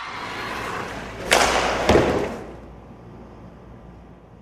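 A rush of noise with two heavy thumps about half a second apart, after which the sound fades away.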